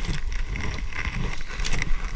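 Rubbing and handling noise on a body-worn camera's microphone as a toy Nerf blaster is handled, with a few light plastic clicks late on.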